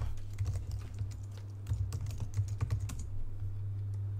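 Typing on a computer keyboard: a quick run of key clicks that stops about three seconds in, over a steady low hum.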